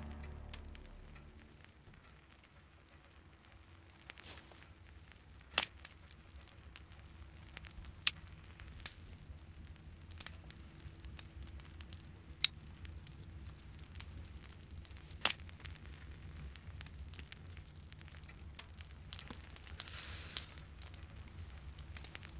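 Faint fire-crackle ambience: a low steady rumble with a handful of sharp isolated snaps spaced a few seconds apart.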